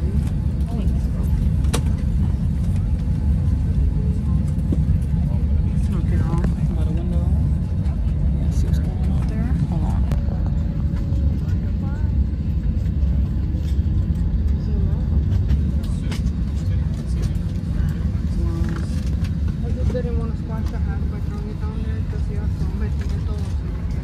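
Steady low rumble of an airliner's cabin, the constant noise of the aircraft's engines and air system heard from a passenger seat, with faint passenger voices in the background.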